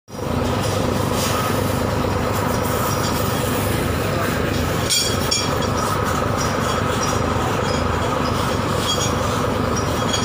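A fishing trawler's diesel engine running steadily with a fast low throb. A few short clinks sound over it, one about halfway through.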